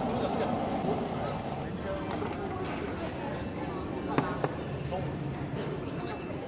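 Indistinct chatter of many people talking at once at café tables, a steady background babble. Two sharp clicks a little after four seconds in.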